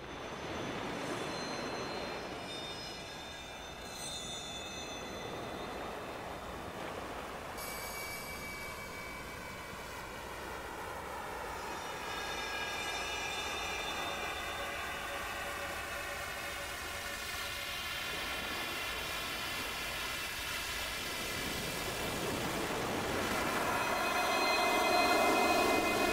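Electronic ambient soundtrack: a steady rushing, surf-like noise run through a sweeping flanger-like effect, so ringing tones glide slowly up and down through it. It swells louder near the end.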